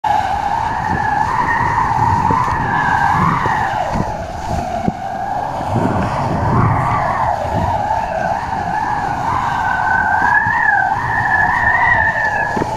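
Wind rushing over a camera on a moving kiteboard rig, with a wavering high whistle running throughout and the board hissing and slapping over choppy water.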